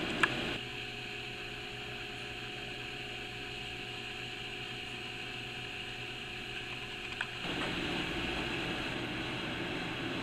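Steady room noise: a low, even mechanical hum and hiss, with a single click just after the start and small shifts in level about half a second in and again near seven and a half seconds.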